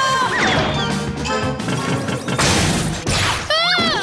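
Cartoon sound effects of ice cracking and shattering, two noisy crashes about a second and about two and a half seconds in, over background music. A short sliding pitched tone comes near the end.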